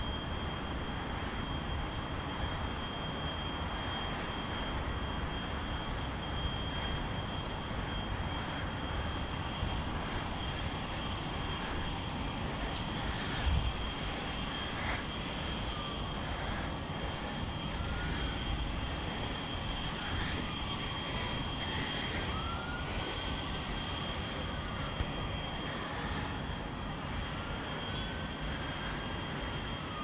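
Steady low rumble of distant town noise with a faint, steady high whine. There is a single knock about halfway through, and faint rising and falling siren wails in the second half.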